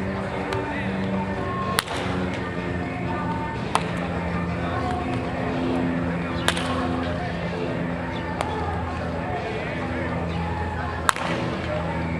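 Wooden baseball bat cracking against pitched balls in batting practice: four sharp hits a few seconds apart, with a fainter one between the last two. Music and voices run underneath.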